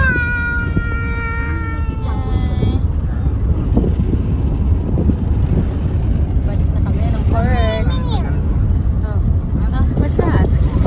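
A car driving at road speed, with a steady low rumble of road and wind noise from inside the cabin. Over it, a child's voice holds one long, slightly falling wordless note at the start, and makes a shorter wavering call about seven seconds in.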